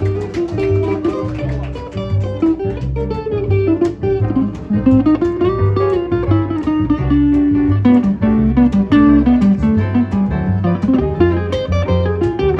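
A live band playing, with a guitar to the fore: a melody of held and sliding notes over a steady, evenly pulsing bass.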